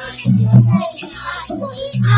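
A group of women singing a Holi song together, high voices rising and falling over a pulsing low beat.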